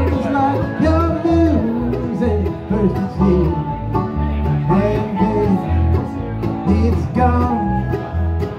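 Live bluegrass band playing, with banjo, acoustic guitar and mandolin over a steady low beat and a man singing. The sound is captured through a phone's microphone.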